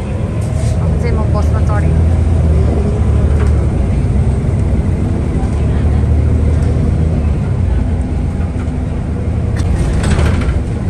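City bus in motion, heard from inside the passenger cabin: a steady low engine and road rumble.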